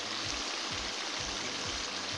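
Onion-tomato masala in ghee, with a little water in it, sizzling and bubbling in a kadhai on the heat: a steady hiss.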